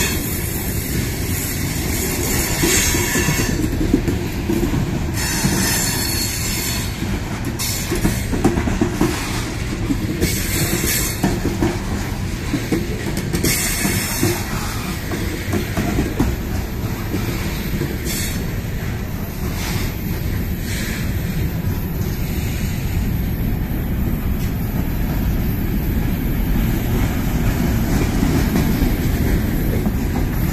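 Freight train of covered hopper cars rolling slowly past close by: a steady rumble of steel wheels on rail, with clicks over the rail joints. Several high-pitched wheel squeals come a few seconds apart, mostly in the first half.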